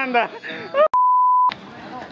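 A man talking, cut off by a single steady high-pitched electronic beep about half a second long, with all other sound muted around it: a censor bleep dubbed over the speech. Faint background noise follows.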